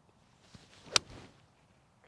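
Golf pitching wedge striking a ball off turf: one sharp, crisp click about halfway through, with a faint swish of the swing just before it.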